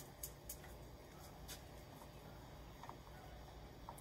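Near silence: a faint low background hum with a few soft clicks.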